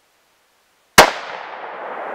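A single 6.5 rifle shot about a second in, loud and sharp, followed by a long echo dying away over the next two seconds.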